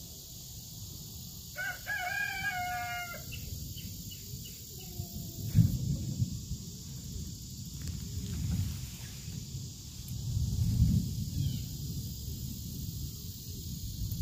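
A rooster crows once, about one and a half seconds in, a short call of under two seconds. Later come low rumbling thumps, the loudest about five and a half seconds in.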